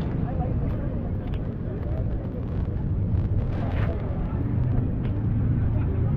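Busy outdoor park ambience: a steady low rumble, with faint voices of people nearby now and then.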